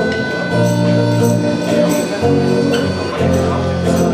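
A band playing a song live, with guitar chords over a steady rhythm.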